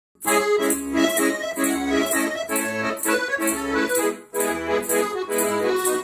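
Scandalli piano accordion playing a tune over a steady beat of alternating bass notes and chords, with a brief break a little past four seconds in.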